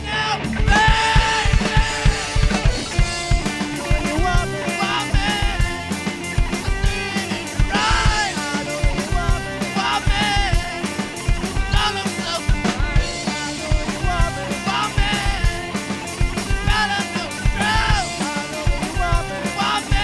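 A rock band playing live: drum kit, electric guitar and bass guitar, with a man singing over them.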